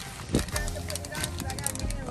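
Plastic bag of sunflower seeds crinkling and crackling as hands dig into it and pull it open, over a steady low hum.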